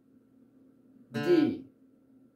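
Acoustic guitar string plucked once about a second in and ringing briefly as it is checked during tuning.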